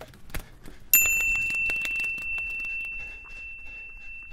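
A single high, bell-like chime struck about a second in and ringing on as it slowly fades, with faint scattered ticks and clicks around it: a logo-intro sound effect.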